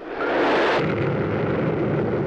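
A pressure cooker exploding: a loud blast that starts abruptly. Its hissing top dies away after about a second while a lower rumble carries on.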